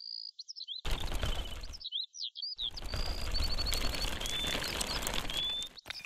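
Small birds chirping in quick repeated phrases with a few short whistled trills, heard alone near the start and again about two seconds in. In between and through the second half, scratchy rustling and light clicking from miniature clay bricks and a toy wheelbarrow being handled on sand.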